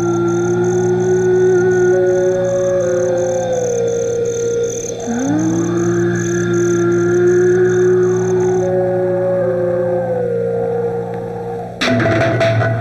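Eerie film background score: two long held phrases, each sliding up into a sustained note while a higher line steps down, over a steady low drone and a fast high pulsing tone that stops about two-thirds of the way through. A sudden loud stroke hits near the end as the music changes.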